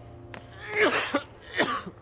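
A man coughs twice, short coughs about a second in and near the end, over a low steady hum.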